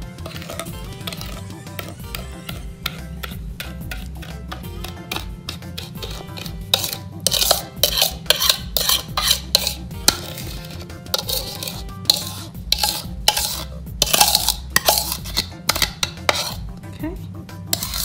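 Metal spoon scraping and clinking against a mixing bowl as a thick butter-sugar mixture is pushed out of it, in a quick run of repeated scrapes through the second half. Quiet background music runs underneath.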